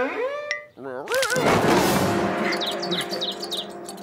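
Cartoon crash-landing sound effects: a brief wavering cry, then a loud thud of bodies hitting the floor about a second and a half in. A quick run of high chirps follows, the tweeting-birds effect for being dazed, over a low held tone.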